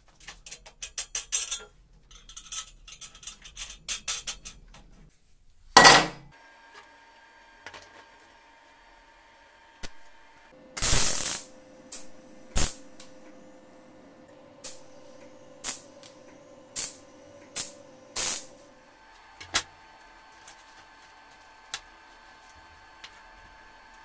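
A run of quick clicks and metal rattles for the first few seconds, then a MIG welder striking several short tack welds, each a brief burst of arc crackle about half a second long, with sharp metal clicks between them. A steady faint hum from the welding machine runs under the tacks.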